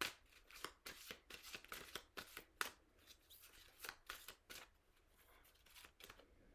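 A deck of oracle cards being shuffled hand over hand: a quick run of faint card flicks and slaps, thinning out after about three seconds and stopping near the end.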